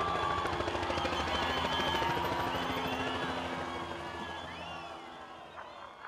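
A dense noisy background with indistinct voices and short gliding tones, fading away over the last two seconds.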